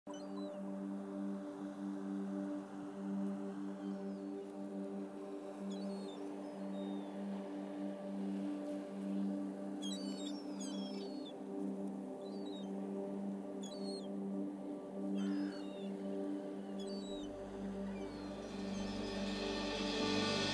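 Ambient background music: a steady held pad chord with short bird chirps every few seconds. A low bass comes in near the end, and a bright hiss swells up in the last couple of seconds.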